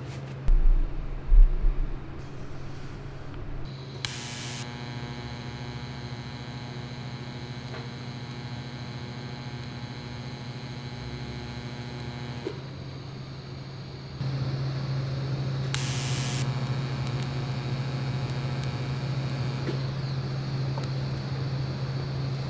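TIG welder laying tack welds across a gap in square steel tubing: a short crackling burst as the arc strikes, then a steady electrical hum and buzz while the arc burns, with a second arc strike later on. A few knocks in the first couple of seconds as the workpiece is handled.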